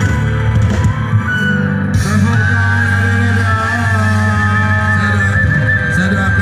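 Live band music played loud through a PA: steady bass and guitar, with a long high note held with vibrato from about two seconds in.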